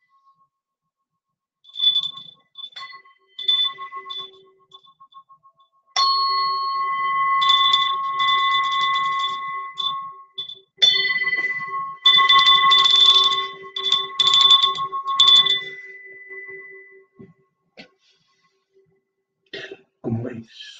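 A small brass singing bowl struck several times with a striker, each stroke starting a long ringing of several steady overtones. Two stretches in the middle carry a buzzing rattle over the ring. The sound fades out a few seconds before the end.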